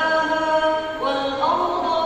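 A girl's melodic Qur'an recitation (tilawah) from memory, sung into a microphone: one long held note, moving to a new pitch about a second in.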